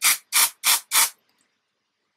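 Aerosol can of Batiste dry shampoo sprayed onto the hair in four short hissing bursts, about three a second, stopping a little after the first second.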